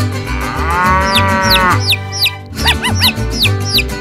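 A cow moo sound effect, one long moo that rises and falls in pitch, followed by two runs of quick high chirps, over background music with a steady beat.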